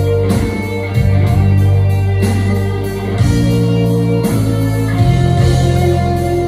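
A live rock band plays an instrumental passage with electric guitar and bass, without vocals, heard from the audience in a concert hall.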